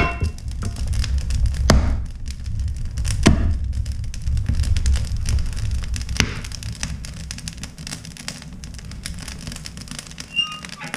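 Wood fire burning in an open wood stove: a low steady rumble with a few sharp pops as the burning wood crackles, the rumble easing off near the end. A knock right at the start as a hatchet is set down against the woodpile.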